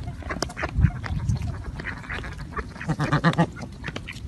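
Ducks quacking in a feeding flock, with a run of quick quacks about three seconds in, over short clicks of bills pecking grain off the ground.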